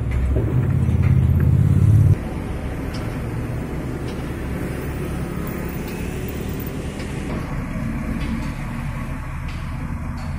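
Heavy construction machinery running with a steady low rumble while a crane hoists a steel formwork panel; the rumble is louder for the first two seconds, drops suddenly, then runs on steadily.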